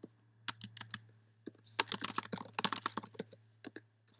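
Typing on a computer keyboard: a few separate keystrokes, then a quick run of keys from about a second and a half in.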